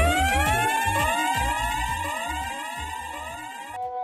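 A sound-system dub siren effect fired between tunes in a reggae DJ mix: pitch sweeps repeating quickly, each rising sharply then levelling off, over pulsing low thumps. It fades slowly, then cuts off suddenly near the end, leaving a few steady held tones.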